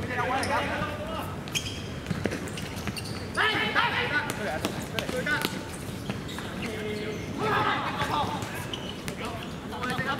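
Outdoor football game on a hard court: players shouting to each other in several bursts, with scattered sharp thuds of the ball being kicked and bouncing on the hard surface.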